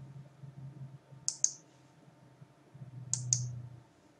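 Computer mouse clicking: two quick double-clicks about two seconds apart, over a faint low hum.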